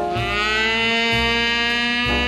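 Jazz band playing a slow funky blues: the horns, trumpet and saxophone, start a loud chord right at the start and hold it, over low bass notes about once a second.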